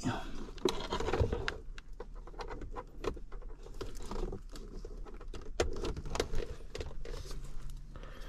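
Scattered small clicks and rustles of a USB cable being handled and plugged into a car's dashboard USB port, over a steady low hum.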